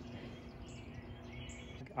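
Quiet outdoor background with a faint steady hum and a few faint, high bird chirps.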